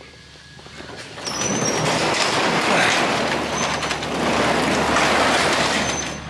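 A garage door rolling shut, a steady rumbling run that builds over about a second and lasts about five seconds.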